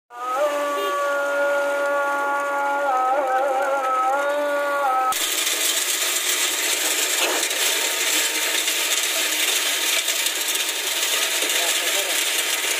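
A steady pitched tone with several overtones for the first five seconds, wavering briefly near its end, then after an abrupt cut a loud, steady, gritty rush of wet concrete discharging from a concrete pump's delivery hose into a footing form.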